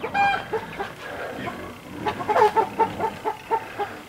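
Chickens clucking: one short high call at the start, then a quick run of repeated clucks in the second half.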